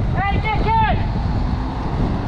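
A semi tractor-trailer's diesel engine running as the rig pulls slowly past, a steady low rumble mixed with wind on the microphone. A voice calls out in short rising-and-falling exclamations during the first second.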